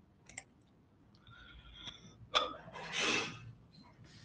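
A quiet pause with a few faint clicks and, about three seconds in, a short breath-like hissing noise close to the microphone, preceded by a brief mouth or throat sound.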